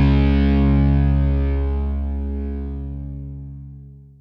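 The last chord of a pop-punk song on distorted electric guitar, held and slowly fading away.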